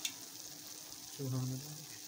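Vermicelli (seviyan) in a pan on the stove, sizzling steadily as its last water cooks off, the dish just done after steaming under the lid. A sharp click comes right at the start.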